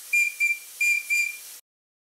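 Small PM Research steam whistle on a model traction engine blowing a single high note in four short toots, in two pairs, on quite a low steam pressure. The sound cuts off abruptly near the end.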